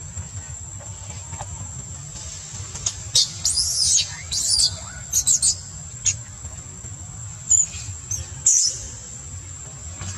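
Infant long-tailed macaque giving shrill, high distress squeals that arch up and down in pitch, a burst of them from about three seconds in and a couple more near the end, while a bigger monkey grabs at it. A steady high insect drone runs underneath.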